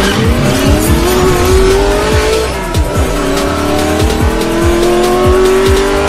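Electronic music with a steady kick-drum beat, overlaid with a car engine sound effect revving up. Its pitch rises, drops about three seconds in as at a gear change, then climbs again.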